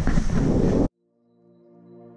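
Loud wind rushing over the camera microphone while skiing downhill, cut off abruptly a little under a second in. After a brief silence, background music fades in with held, steady chords.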